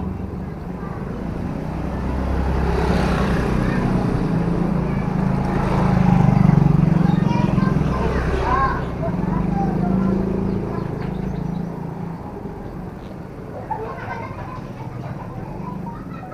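Motor scooter engines passing close by, growing louder to a peak about six seconds in and fading away by about twelve seconds.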